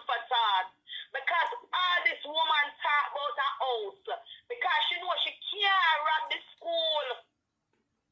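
Speech: a person talking steadily, breaking off shortly before the end.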